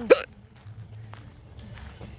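A person's single short, high-pitched laugh, a sharp yelp-like burst rising in pitch right at the start.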